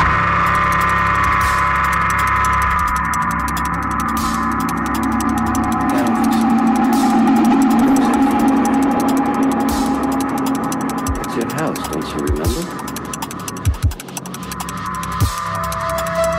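Drum and bass music: sustained synth chords over a low bass, with fast, dense hi-hat ticks. About three-quarters of the way through the texture thins to a few sharp low hits.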